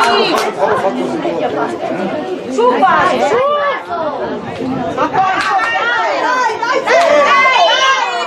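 Many voices overlapping at once, calling and chattering: young footballers and onlookers during play at a youth football match.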